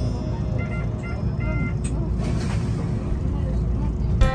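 Steady low rumble of an Enoden electric train heard from inside the driver's cab as it waits to depart, with a few short high tones about a second in.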